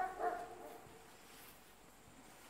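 A short high-pitched cry that trails off in the first half second, followed by faint steady background noise.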